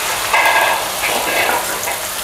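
Instant-noodle, egg and vegetable batter sizzling in hot oil in a frying pan as it is scraped in from a bowl, a steady hiss.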